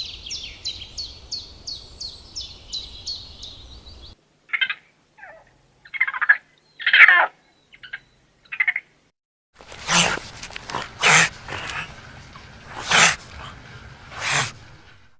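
A rapid run of high chirps from a small bird, about two or three a second, for the first four seconds. Then a few short, separate animal calls with silence between them, and from about ten seconds in a string of short, sharp, noisy sounds.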